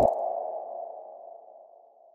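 Logo sting sound effect: a single ringing mid-pitched tone, loudest at the start and fading away over about two seconds.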